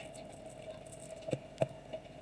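Faint handling noise of craft materials on a table: two short light clicks about a second and a half in, over a faint steady hum.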